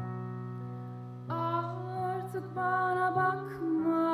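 Grand piano playing slow, held chords; about a second and a half in, a woman's voice starts singing over it.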